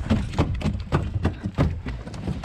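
Rapid, irregular thuds and splashes, about five a second, from Asian carp jumping around a bowfishing boat, hitting the hull and flopping on deck, over a low steady rumble.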